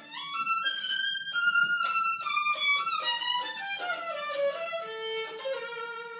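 Solo violin: a quick rising run of notes, then a melody that steps mostly downward and settles on a held note near the end.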